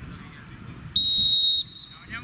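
Referee's whistle blown once for the kick-off: a single shrill blast lasting under a second, about a second in.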